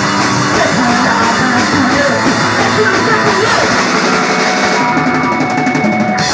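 Rock band playing, with the drum kit keeping a steady beat on the cymbals about three strokes a second alongside guitar. Near the end the cymbals drop away.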